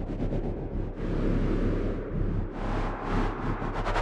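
Electronic sound-art soundtrack: a steady low drone under a hissing noise texture that breaks into rapid stuttering pulses near the start and again late on.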